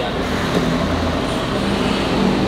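Steady motor-vehicle noise with no distinct events.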